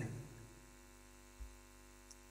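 Faint steady electrical mains hum in a pause between spoken phrases, with a soft low thump about one and a half seconds in.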